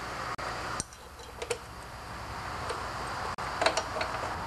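A few light metallic clicks and taps as a fuel pump and its metal bracket are handled and fitted onto a small engine, over a steady low background hum.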